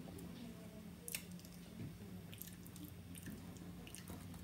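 Faint close-up chewing: soft wet mouth clicks and squishes of someone eating a mouthful of food, with one sharper click about a second in. A steady low hum runs underneath.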